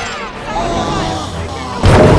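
Film soundtrack mix of music and effects, broken near the end by a sudden loud boom.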